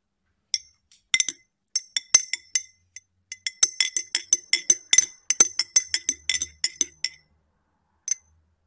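Metal teaspoon clinking against the inside of a ribbed glass tumbler of tea as it is stirred, each strike ringing briefly. A few scattered clinks at first, then a quick run of about four or five clinks a second that stops shortly before the end.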